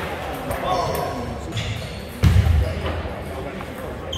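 Table tennis play in a sports hall: light clicks of the ball and a heavy low thud about two seconds in, over voices.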